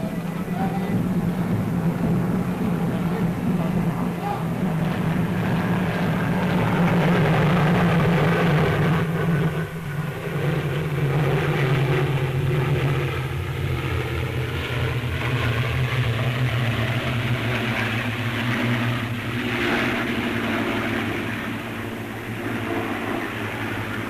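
A formation of six aircraft flying overhead, their engines droning steadily. The pitch drops about ten seconds in as they pass.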